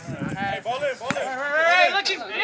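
Several young men's voices talking and calling out over one another, the loudest call near the end, with a single sharp knock about a second in.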